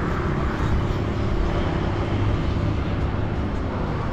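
Steady hum of road traffic with a low, uneven rumble underneath.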